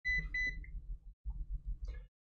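Digital multimeter beeping twice, two short high beeps in quick succession, followed by faint handling noise and small clicks as test leads are plugged into it.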